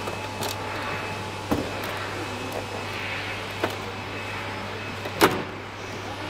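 Plastic clicks and knocks from the document feeder cover of an HP LaserJet Enterprise MFP M725 being opened and handled. There are four, the loudest about five seconds in, over a steady low hum.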